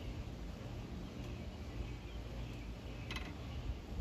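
Outdoor background noise: a steady low rumble with a faint hiss above it, and one brief click about three seconds in.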